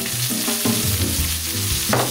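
Risotto sizzling and simmering in a hot pan while a wooden spoon stirs it. There is a single sharp knock near the end.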